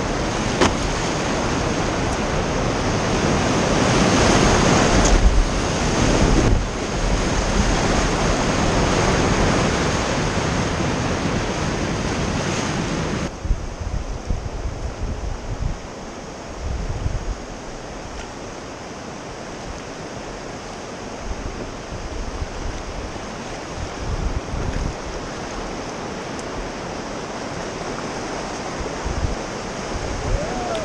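Whitewater of a river rapid rushing loudly and steadily around a raft, then dropping suddenly about halfway through to a quieter wash of moving water, with low thumps of wind on the microphone.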